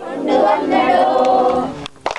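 A group singing a phrase of an Onam song (Onappattu) together, unaccompanied, for a kaikottikali clapping dance. The phrase ends shortly before the end, followed by a single sharp hand clap.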